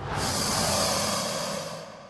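A long, breathy hiss that starts suddenly, holds, and fades away toward the end, over a faint low hum.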